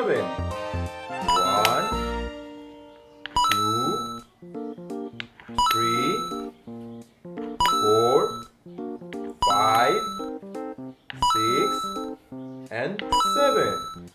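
A voice counting rings one at a time, seven counts about two seconds apart, each count marked by a bell-like chime, over steady children's background music.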